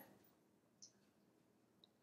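Near silence with two faint, short clicks about a second apart: fingernail taps on a smartphone screen.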